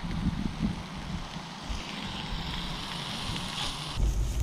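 Wind on the microphone: a steady low rumble with an even hiss above it.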